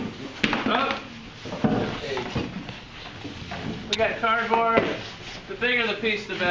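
Wooden lab cabinet doors and drawers being opened and shut, with a sharp clack about half a second in and another near four seconds, amid voices talking.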